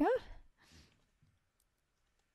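The tail of a spoken word, then near silence on the conference-call line.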